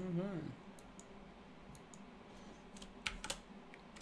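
Scattered clicks of a computer keyboard being typed on, a few at a time with a quick cluster a little after three seconds, after a man's voice briefly at the start.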